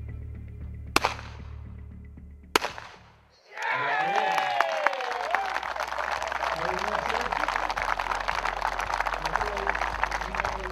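Two shotgun shots at a pair of clay targets, about one and a half seconds apart, each with a short echo, over a low music drone. After a brief hush, applause, shouts and cheering break out from about three and a half seconds in and keep going.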